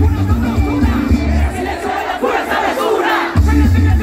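A crowd shouting over music with a heavy, pulsing bass beat. The bass cuts out about halfway through and comes back shortly before the end.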